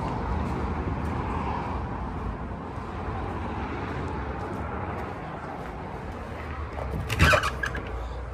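Steady rumble of road traffic, with a vehicle passing early on. A short, sharp, loud sound cuts in about seven seconds in.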